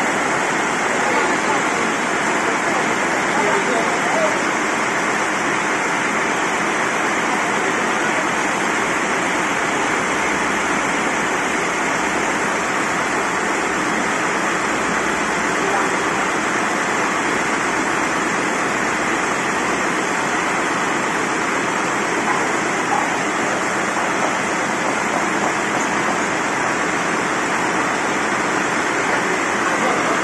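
Large band sawmill running steadily, its blade sawing through a merbau log. A loud, even noise that does not let up.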